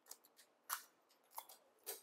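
Faint, crisp crackles, about four short ones, from hands handling a roll of gold foil washi tape and a sheet against planner pages.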